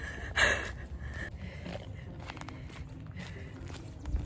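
A runner's sharp, breathy exhale about half a second in, then her footfalls and a steady low wind rumble on a handheld phone's microphone as she runs.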